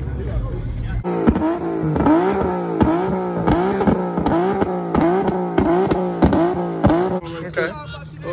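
Car engine revved over and over in quick throttle blips, about nine rises and falls in pitch at a steady pace of roughly one and a half a second. The blips begin about a second in and stop shortly before the end.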